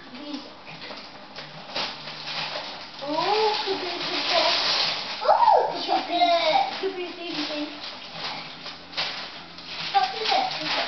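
Wrapping paper crinkling and tearing as a present is unwrapped by hand, with voices talking, a child's among them, for several seconds in the middle.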